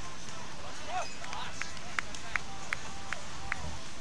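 Beach tennis paddles hitting the ball: five sharp pops in quick succession, each a few tenths of a second apart, in the second half, over background voices.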